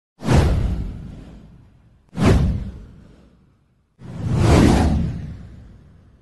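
Three whoosh sound effects, about two seconds apart, each starting sharply and fading away over a second or two; the third swells up more gradually.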